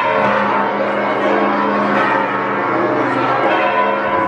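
Church bells ringing continuously, many bell tones overlapping and sounding together.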